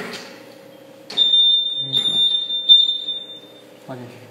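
Electronic warning buzzer of a Longxing LXC-252S computerized flat knitting machine: one steady high-pitched beep starting about a second in and lasting about two and a half seconds, swelling slightly three times. A knock sounds at the start and a small click near the end.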